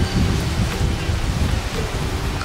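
Wind buffeting the microphone as a fluctuating low rumble, with leaves and undergrowth rustling.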